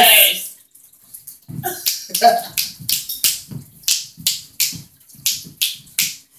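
Hand claps in a steady run of about three a second, starting about a second and a half in.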